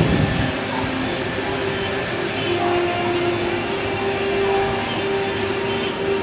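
Steady rushing outdoor noise with a low thump at the start and a few faint held tones underneath.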